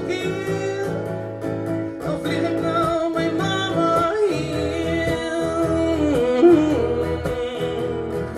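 A man singing live into a microphone over his own electric guitar, holding long notes that bend and slide in pitch.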